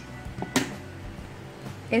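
A single sharp snip of scissors cutting thread, about half a second in.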